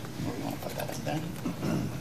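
Low, indistinct voices talking in the room, with a crisp rustle of a large paper sheet being handled about half a second to a second in.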